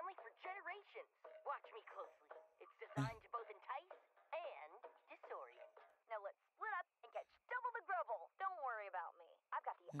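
Quiet, thin-sounding cartoon dialogue: animated characters talking back and forth, played back at low volume. A single dull knock comes about three seconds in.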